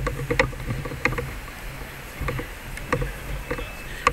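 Footsteps on pavement, short sharp clicks about two a second, over a steady low rumble of wind and handling noise on a handheld camera.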